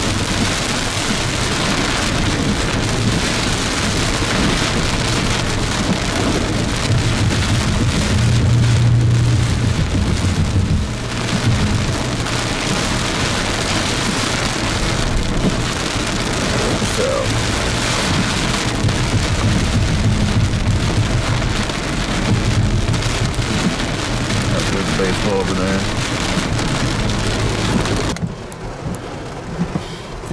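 Heavy rain drumming on a moving car's roof and windshield, with tyre and road rumble from the wet highway underneath, heard from inside the car. The downpour stops abruptly near the end.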